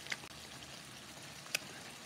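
Shrimp and scallops frying faintly in a pan of hot oil, a steady low sizzle, with a short sharp click about a second and a half in.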